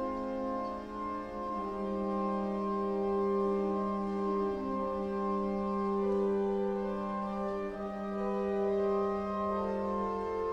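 Organ playing slow, held chords that change every few seconds.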